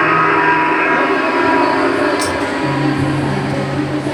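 Loud, sustained horn-like blare that drops to a lower pitch about three seconds in, with a brief high hiss around two seconds in.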